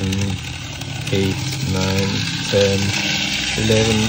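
Small electric motor and wheels of a Bachmann N scale Brill trolley running around the track at four volts, a steady high hiss. A voice makes about five short, drawn-out sounds over it.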